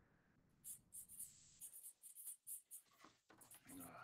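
Near silence, with faint, intermittent scratching of a pen or marker writing on paper.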